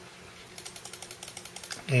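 Rapid, evenly spaced light clicks, about ten a second, from a computer mouse's scroll wheel as a settings list is scrolled.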